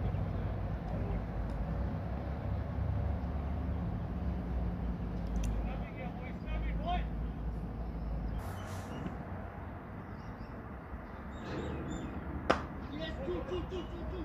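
Open-air field ambience with a steady low rumble and faint voices of players calling in the distance. Near the end a single sharp crack of a cricket bat hitting the ball stands out, off the middle of the bat.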